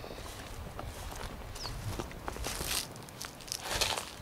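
Footsteps through grass with rustling and a few light clicks as someone walks up close; the rustling is loudest about halfway through and again near the end.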